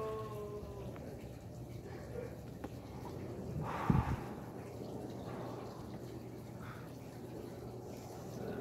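A person exhaling a lungful of cigarette smoke about halfway through: a short breathy puff that briefly thumps the microphone, over quiet outdoor background.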